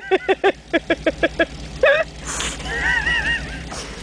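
A person laughing hard in a quick run of short bursts, then a few more wavering laughing calls, over the low steady running of a Land Rover engine pulling on a tow rope.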